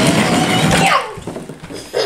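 Hard plastic wheels of a Little Tikes Cozy Coupe ride-on toy car rumbling across a wooden floor as it is pushed fast. The rumble dies away after about a second.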